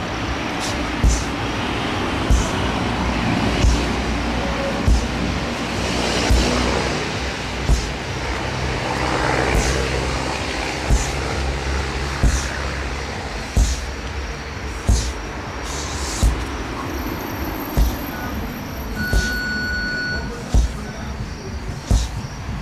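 Sledgehammer striking a large rubber tractor tire over and over, in a steady rhythm of about one blow every 1.3 seconds.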